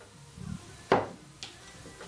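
Kitchen handling sounds as flour is poured into a plastic mixing bowl: a soft bump, then one sharp knock just under a second in, of a bowl or wooden spoon striking the mixing bowl.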